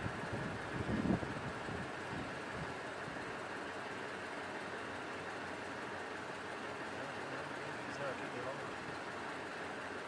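Steady background noise with no clear source, and a brief faint voice about a second in.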